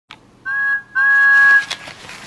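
Two steady whistle-like toots, a short one and then a longer one, each sounding several pitches at once, followed by a small click.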